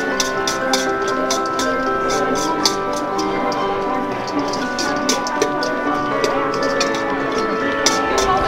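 Background music with dining-room chatter, over quick irregular metallic clinks and scrapes, several a second, of a metal serving utensil against a stainless steel salad bowl as a spinning salad is tossed.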